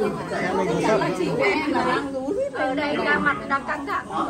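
People talking: indistinct, overlapping chatter of several voices.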